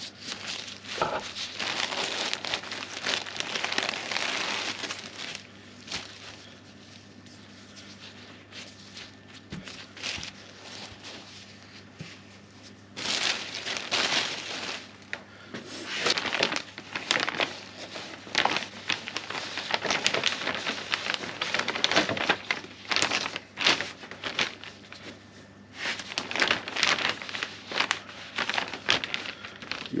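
Plastic vacuum bag and breather felt crinkling and rustling as they are handled, in irregular bursts with a quieter stretch a few seconds in, over a faint steady hum.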